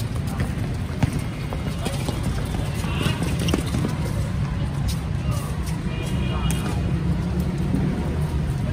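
Outdoor basketball game: indistinct shouts and chatter from players and onlookers, with a few sharp knocks from the ball, over a steady low rumble.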